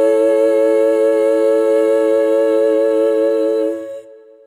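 Music: voices hold one long harmonized note with a slow vibrato, fading out near the end.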